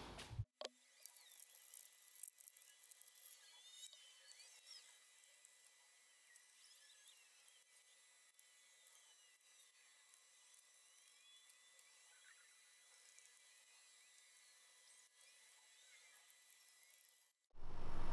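Near silence: the sound track is all but muted, leaving only very faint, thin high-pitched traces.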